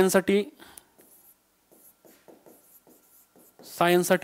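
Marker pen writing on a whiteboard: a run of short, faint strokes as words are written, between bits of a man's speech at the start and near the end.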